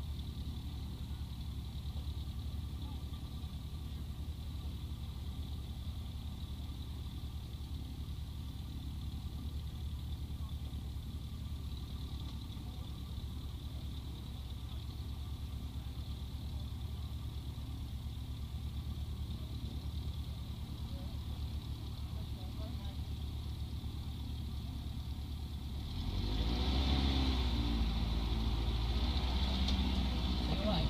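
Light aircraft's piston engine idling steadily, heard from inside the cockpit. Near the end the sound grows louder as voices come in.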